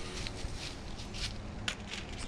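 Quiet rustling and a few soft clicks, the sharpest about a second and a half in, as a roll of galvanized wire mesh (hardware cloth) is handled.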